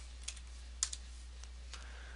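A few faint computer keyboard keystrokes, the sharpest just under a second in, over a steady low hum.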